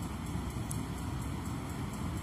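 Steady background noise with a low hum in a pause between spoken phrases, with a faint tick about two-thirds of a second in.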